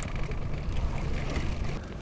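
Wind rumbling on the microphone in an open boat on choppy water: a steady low noise with faint irregular knocks.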